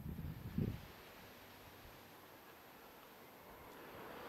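Wind buffeting a microphone that has no windshield: low rumbling gusts for about the first second, then a faint, steady outdoor hiss.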